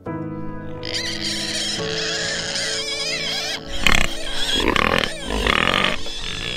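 Background music with steady sustained tones, then, a little before halfway, pigs grunting and squealing loudly in bursts over it.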